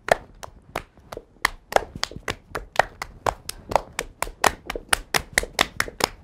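Two people playing a hand-clapping game: a quick, even run of sharp hand claps, about five a second.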